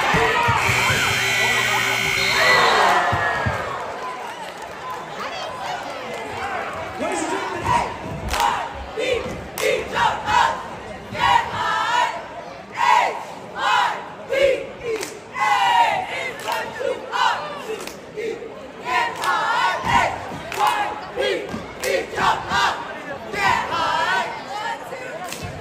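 A gym's scoreboard horn sounds for about two seconds near the start over crowd noise, then a squad of high-school cheerleaders shouts a rhythmic cheer chant, short shouted phrases in a steady beat.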